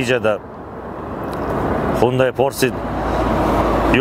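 A road vehicle approaching on the road, its noise growing steadily louder over about three and a half seconds.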